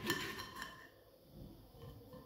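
A knife and fork working on a plate as the end of a prickly pear is cut off: a few light clicks and scrapes of metal on the plate in the first half-second, then almost quiet.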